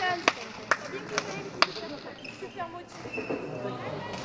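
Badminton rackets hitting a shuttlecock in a fast doubles exchange: four sharp hits, about one every half-second, in the first second and a half.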